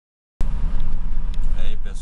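Steady low rumble of a road vehicle's engine and tyres, heard from inside as it drives, starting a moment after the opening silence. A person's voice speaks briefly near the end.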